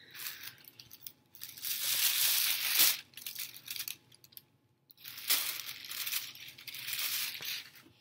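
Tissue-paper honeycomb model rustling and crinkling as it is fanned open between its cardstock covers and folded shut again, in two long stretches of rustling, each marked by a sharp snap.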